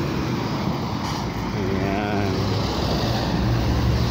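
Road traffic: a steady rush of passing cars, with a low engine hum that swells near the end.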